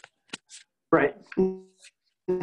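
A person's voice pausing between phrases: a few short mouth clicks, then a brief hesitation sound before speech resumes.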